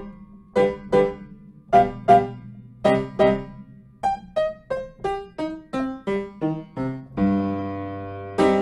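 Piano playing a short melody of separately struck notes, about two or three a second, ending on a sustained chord near the end.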